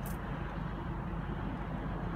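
Steady noise of passing highway traffic, heard from inside a stopped car's cabin.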